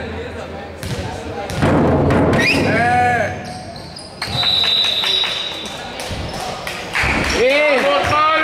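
Basketball game sounds: players and bench shouting short calls, a loud shout about three seconds in and again near the end, with the ball thudding on the hardwood court in between. A held high tone is heard for about a second from about four seconds in.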